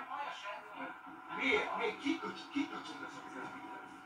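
Faint, muffled voices from a played-back recording, over a faint steady hum.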